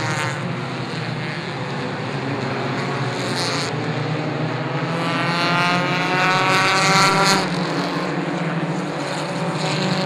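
Four-cylinder Pure 4 stock cars racing, their engines running hard at high revs. About five seconds in, one engine's note climbs steadily for a couple of seconds as the car accelerates past, then drops away suddenly.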